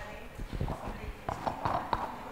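A run of irregular knocks and clicks, starting about half a second in, with indistinct voices under them.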